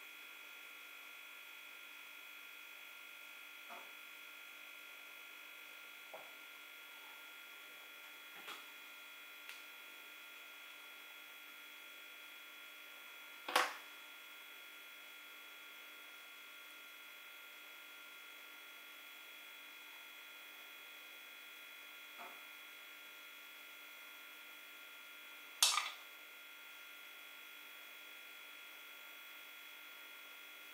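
A steady, faint electrical hum with several high whining tones. It is broken by a few light ticks and two louder sharp clicks, about 14 and 26 seconds in, as cherries are cut and handled with a kitchen knife over bowls.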